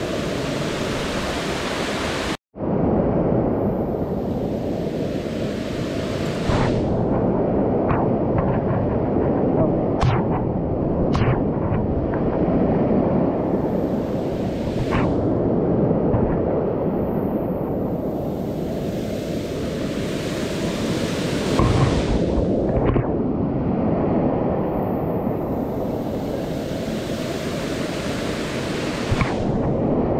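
Rushing water of a waterfall cascade, a steady heavy roar of noise, cut off for an instant a little over two seconds in. A few faint clicks come through around the middle.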